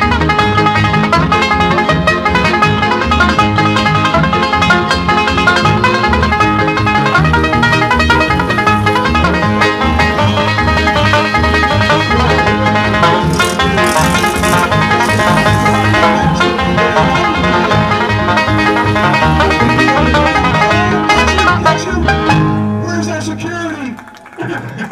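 Banjo-led bluegrass-style soundtrack music with a steady bass beat, fading out near the end.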